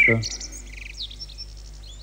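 Songbird singing: a quick run of high chirps and short trills.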